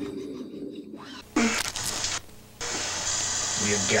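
Hissy, low-fidelity film soundtrack. A brief scratchy noise starts suddenly a little over a second in, then a steady tape-like hiss runs on, with a voice near the end.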